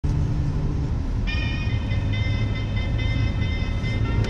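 Steady low rumble of a moving vehicle heard from on board. About a second in, a set of high steady tones comes in over it.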